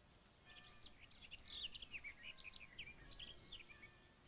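A songbird singing a quick, jumbled run of chirps and warbles, starting about half a second in and stopping near the end.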